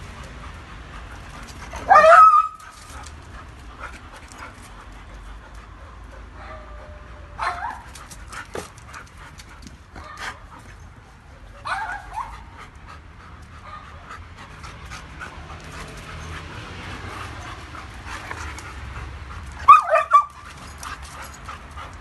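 Two dogs, a German Shepherd and a Doberman, playing: panting, broken by a few short, sharp barks, the loudest about two seconds in and again near the end.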